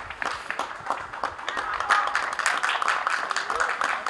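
Applause from a small group: many separate, irregular hand claps, with voices underneath.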